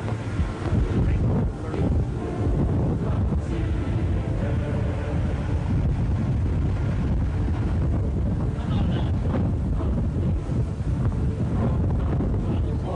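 Wind buffeting a hand-held camcorder's microphone, a steady low rush, with faint indistinct voices behind it.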